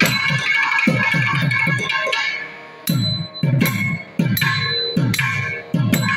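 Thavil drumming in a thani avarthanam solo: crisp, sharp strokes on the treble head and deep bass strokes that drop in pitch, in quick rhythmic patterns. There is a short lull a little over two seconds in.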